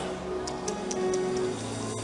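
Soft background music of held, steady chords. Four or five quick, light ticks come in a row from about half a second to just past a second in.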